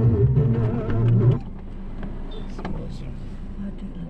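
A drawn-out melodic vocal phrase with wavering pitch that ends about a second and a half in, followed by the steady low hum of a car cabin with a few faint clicks.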